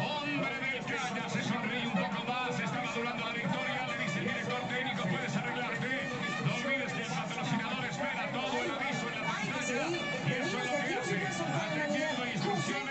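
Several voices talking over one another, with music playing underneath.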